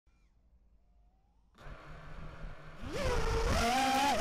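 Brushless motors and 5-inch props of a QAV210 FPV quadcopter spooling up for takeoff. After about a second and a half of near silence a rumble and hiss come in, then a whine rises in pitch near the end as the throttle is raised.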